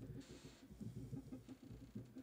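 Faint, irregular laptop keyboard tapping as a short phrase is typed, picked up through the lectern microphone.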